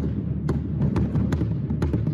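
Marching drumline battery playing: Dynasty marching bass drums and snare drums in a dense, rapid run of low drum strokes, with a few sharp cracks.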